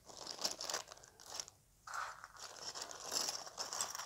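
Clear plastic parts bag crinkling as hands pull it open and work the model-kit parts out, in irregular bursts with a short lull a little before halfway.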